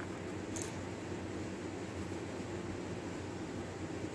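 Steady room noise from a running fan or air conditioner, with a brief faint hiss about half a second in.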